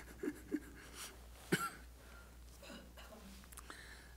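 A man chuckling softly in a few short bursts, the loudest about one and a half seconds in.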